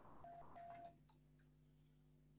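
Near silence: faint room tone over a video call, with two faint, short beeps in the first second.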